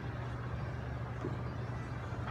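Steady low hum and rushing air of a running fan.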